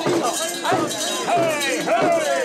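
Mikoshi bearers chanting together, many men's voices overlapping in a rhythmic call, with the metal rings and fittings of the portable shrine clanking as it is shaken.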